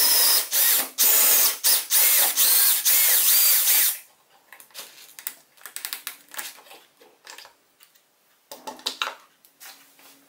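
Cordless drill boring a 20 mm hole through a drilling jig into the tabletop with a Forstner bit, running in several bursts with its pitch shifting under load, then stopping about four seconds in. After that come lighter clicks and knocks as the drill and jig are handled and the drill is set down.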